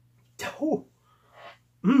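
A man's sudden, short vocal burst with a breathy, explosive start and a brief falling voiced tail, then a soft exhale, and near the end a hummed 'mmm'.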